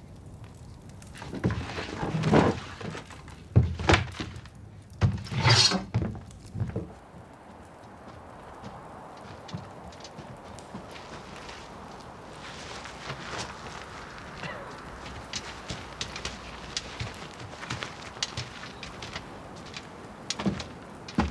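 A few heavy thunks and clatters, like gear being picked up and handled, in the first seven seconds. Then a steady wind-like hiss with faint scattered ticks.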